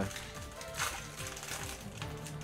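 Background music playing, with a foil booster-pack wrapper crinkling as it is torn open by hand, loudest about a second in.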